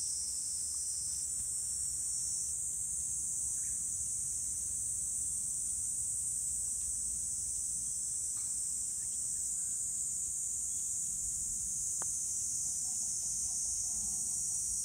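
Steady high-pitched insect chorus from the surrounding trees, with one sharp click about twelve seconds in as the putter strikes the golf ball.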